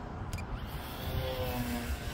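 Electric motor and propeller of an E-flite Carbon-Z Yak 54 RC plane flying overhead, a faint whine that comes up in the second half and drops in pitch, under a heavy low rumble of wind on the microphone.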